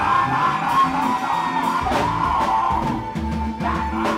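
Live band music from drums, bass, electric and acoustic guitars and keyboard.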